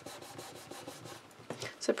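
Hands rubbing and pressing over folded cardstock to flatten and seal a freshly glued fold: a quick, even run of faint rubbing strokes.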